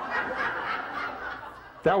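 Soft chuckling, a quiet snicker of laughter, for the first second and a half, then a voice starts speaking near the end.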